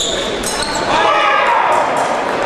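Fencers' shoes squeak and stamp on the piste during a fast épée exchange. About a second in, a loud voice shouts as the touch lands.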